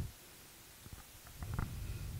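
A few faint clicks, then a low rumble of about a second picked up by a handheld microphone, the kind of noise a hand or a breath makes on the mic.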